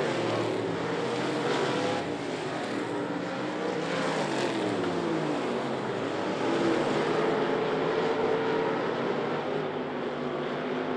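Several street stock race cars' engines running around a dirt oval at caution pace, their overlapping tones rising and falling as the cars pass.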